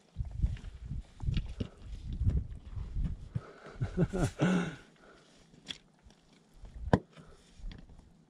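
Boots scuffing and knocking on wet rock during a scramble, with irregular low rumbles. A short grunt about four seconds in and one sharp knock near the end.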